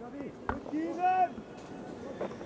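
Cricketers' voices calling out on the field, short high-pitched cries, heard through the ground microphones over the low hum of the ground; a sharp knock sounds about half a second in.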